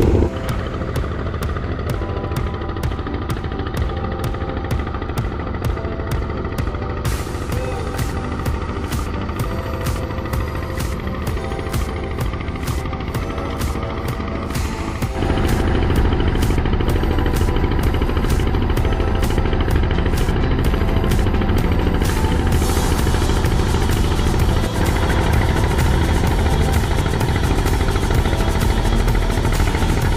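Background music with a steady beat over the running of a small boat's engine as it travels across open water; it gets louder about halfway through.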